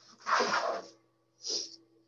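A person's sudden, noisy burst of breath lasting about half a second, followed by a brief hiss about a second later.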